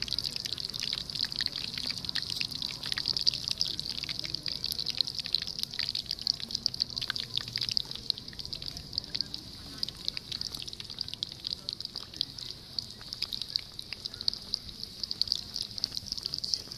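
Rounds of yeast dough deep-frying in a pan of hot oil, a steady sizzle thick with fast, irregular crackling and spitting.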